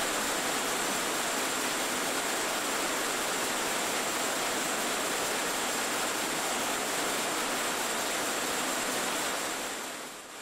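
Steady, even hiss with no distinct machine strokes or clicks, typical of the background noise on an old film soundtrack; it fades and dips right at the end.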